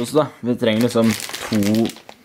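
Foil-lined crisp bags crinkling as a hand handles them, under a man's voice talking or mumbling, which is the loudest sound.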